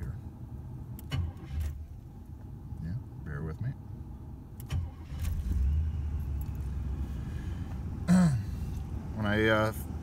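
1985 Oldsmobile Delta 88 cold start after months of sitting: keys jangle at the ignition as the engine is cranked, and it fires and settles into a steady low running sound about five seconds in.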